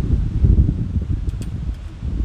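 Wind buffeting the microphone, a loud irregular low rumble, with a few faint ticks from the wire and pliers being worked about one and a half seconds in.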